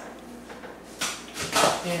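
A woman clears her throat near the end, after a brief click about a second in; the first second is quiet room tone.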